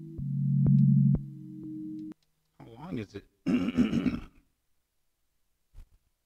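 Beat playing back from an Akai MPC One: a held low synth chord with faint ticks, cut off sharply about two seconds in as playback is stopped. A short voice-like sound follows about a second later.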